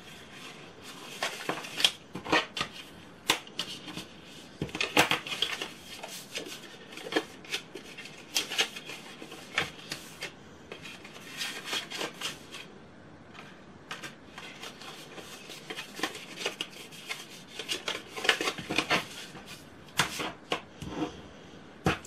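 Cardstock being folded by hand and its creases burnished with a bone folder on a cutting mat: irregular paper rustles and scrapes with sharp light taps, in clusters with quieter gaps between.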